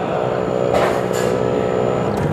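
Automatic coffee machine running as it dispenses frothed milk into a mug: a steady mechanical hum with a brief hiss about a second in, stopping right at the end.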